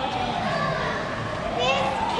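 Young children's voices with drawn-out calls that rise and fall in pitch, over background chatter.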